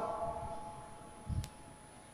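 A pause in a man's speech: the last of his voice fades out in a reverberant room, and a soft low thump sounds about a second and a half in.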